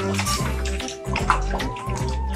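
Water splashing and sloshing in a plastic baby bathtub as an infant is washed by hand, over background music.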